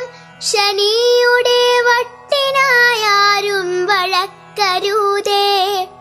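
A solo voice singing a Malayalam poem to a melody in three phrases, with long held notes that waver in pitch, over a steady low drone.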